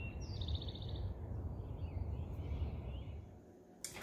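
Songbirds chirping over a steady low outdoor rumble. About half a second in, one bird gives a quick, rapid run of high chirps, followed by fainter calls. The rumble fades away shortly before the end.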